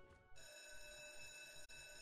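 Faint online slot machine game sound: a held electronic chime of several steady tones at once, starting about a third of a second in with a brief dropout near the end, played as the reels spin and land.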